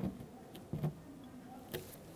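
A plastic trim tool scraping leftover glue and double-sided tape off a painted truck door: a few short scrapes and clicks, one at the start, another about a second in and a fainter one near the end.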